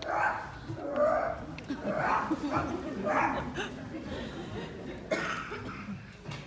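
A person imitating a dog, giving a series of short dog-like cries, each about half a second to a second apart.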